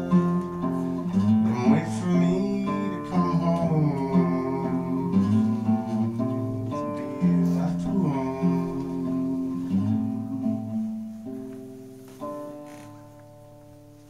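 Classical nylon-string guitar strummed in chords that change every second or so, closing a song. A last chord about twelve seconds in rings out and fades.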